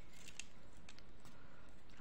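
Faint, sparse clicks of plastic beads and nylon beading line being handled, over a steady low hiss.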